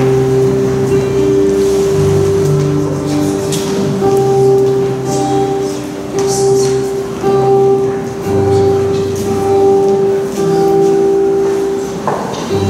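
Instrumental music: held chords over a bass note that changes every second or two, with one middle note sustained throughout.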